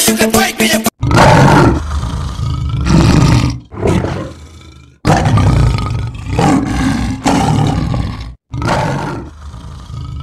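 A loud roar, probably an added sound effect, heard three times. Each roar cuts in suddenly after a brief silence and fades away.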